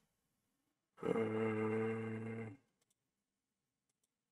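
A person's drawn-out hesitation sound, 'uhhh', held on one steady pitch for about a second and a half starting about a second in.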